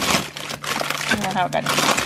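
Plastic packaging of frozen food rustling and crinkling as a hand rummages through bags in a chest freezer, with a brief vocal sound about halfway through.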